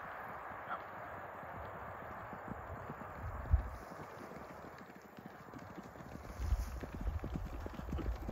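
Hoofbeats of two ridden horses on grass, faint at first and growing louder and quicker as they come closer, with one louder single thump about three and a half seconds in.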